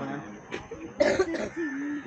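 A person coughs sharply once, about a second in, followed by a short hum of the voice.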